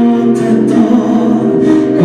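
A man singing a song into a microphone, amplified through the hall's sound system over musical accompaniment, holding sustained notes.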